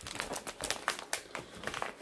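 Clear plastic pocket-letter sleeve crinkling as it is handled, a run of irregular small crackles and clicks.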